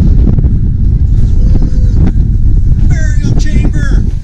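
Strong wind buffeting the microphone, a loud, continuous low rumble. A voice calls out near the end.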